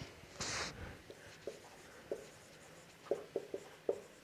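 Dry-erase marker squeaking on a whiteboard in short strokes as words are written, with a quick run of squeaks in the last second. A brief hiss about half a second in is the loudest sound.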